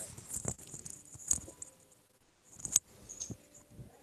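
Faint handling noise picked up by a video-call microphone: a few scattered sharp clicks and taps, the loudest about a second in and just before three seconds in.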